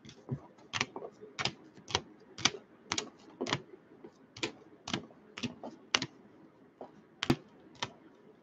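Rigid plastic card holders clicking as they are laid one at a time onto stacks on a table, about two sharp clacks a second with one louder one near the end.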